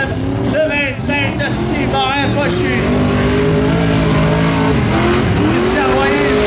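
Modified dirt-track race car engine under hard throttle. It holds steady revs in the middle and revs up again near the end as the car slides through the dirt turn.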